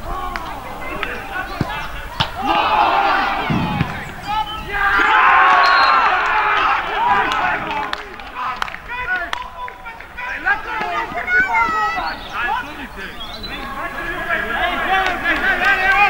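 Shouting and cheering from football players and spectators celebrating a goal, loudest a few seconds in, with a few sharp knocks.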